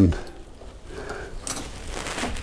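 Lee Auto Breech Lock Pro progressive reloading press being worked by its handle, the ram rising to seat a bullet: quiet mechanical handling noise with one sharp metallic click about a second and a half in.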